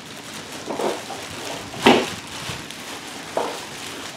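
Clear plastic packaging being handled, crinkling and rustling, with one sharper, louder crinkle about two seconds in and smaller ones near the start and end.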